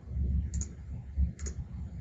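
Computer mouse clicking: two quick double clicks about a second apart, over a low background rumble.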